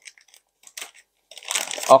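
Crinkling of a metallised anti-static plastic bag as a hand pulls an RGB fan controller and its remote out of it. There are a few faint crackles at first, then a louder rustle in the last half-second or so.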